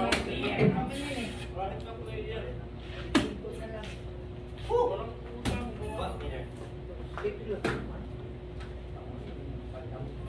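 Soft-tip darts hitting an electronic dartboard: sharp hits about two seconds apart, over indistinct voices and a steady hum.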